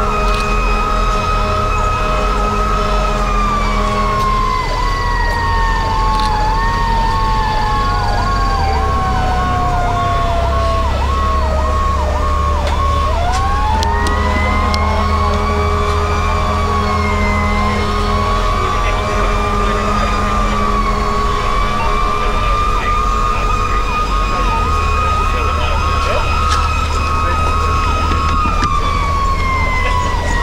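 Fire engine siren: a slow wail that falls steadily, swoops back up about halfway through and falls again near the end, with a faster warbling siren tone alongside it for much of the time, over a steady low engine drone.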